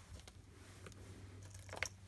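Quiet handling sounds: hands moving a beaded dangle and ruler across a cloth-covered table, with a short click near the end, over a faint steady hum.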